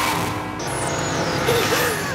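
Trailer soundtrack: a noisy, rumbling sound effect under music, with a thin high whine that falls in pitch in the first second and a wavering tone in the second half.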